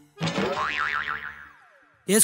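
Comic "boing" sound effect: a burst with a wobbling pitch that then slides downward and fades out.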